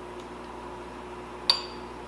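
A single clink of a metal spoon against a ceramic dinner plate about one and a half seconds in, with a short ringing tone after it. Otherwise quiet room tone with a faint steady hum.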